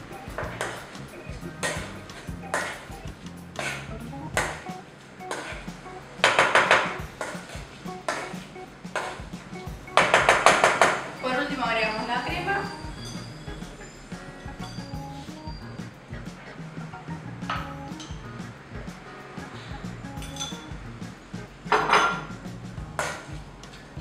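A hand masher mashing boiled sweet potatoes in an enamelled pot, its head knocking and scraping on the pot's sides and bottom again and again, with two louder spells of rapid clatter about six and ten seconds in. Background music plays under it.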